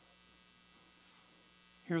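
Faint, steady electrical mains hum during a pause in speech; a man's voice starts again at the very end.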